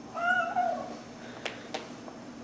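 A domestic cat gives one drawn-out meow, about half a second long, just after the start, followed by two faint clicks.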